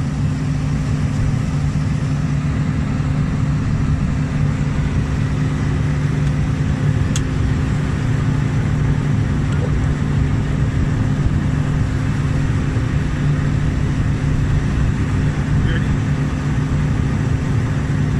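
An engine running steadily at a constant speed, a low, even drone with fixed tones that does not change. A single small click sounds about seven seconds in.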